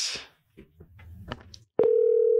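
A telephone line tone of an outgoing call: after a faint click near the end, a loud, steady single-pitched tone starts and holds as the call is placed.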